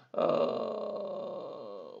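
A man's voice holding a long, drawn-out hesitation sound like 'uhhh' for nearly two seconds, slowly sinking in pitch and fading.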